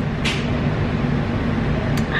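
A steady low hum runs under a short sip of iced coffee through a plastic straw about a quarter second in, with a small click at the end.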